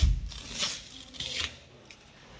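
Orange painter's masking tape being peeled off a metal door lever handle and balled up by hand: two short ripping, crinkling noises about a second apart, after a low thump at the start.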